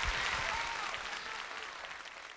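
Concert audience applauding at the end of the song, the applause fading out steadily.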